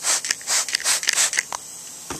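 Windex glass cleaner squirted from a trigger spray bottle: several quick hissing spritzes in a row onto the valve area of a lawnmower's flathead engine, wetting it for a bubble leak test of a suspected bent valve.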